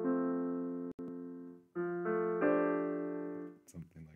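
Sustained chords played on a keyboard with a piano sound, including an F and A a major third apart. The first chord is held about a second and a half with a brief break. A second chord is struck a little before halfway, gains a note shortly after, and fades out near the end.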